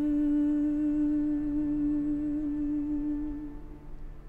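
Soprano humming one long held note with a closed mouth, ending the carol. The note holds steady and fades out about three and a half seconds in.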